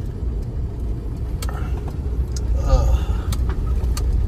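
Steady low rumble of a Tata Safari Storme on the move along a highway, its diesel engine and tyre noise heard from inside the cabin.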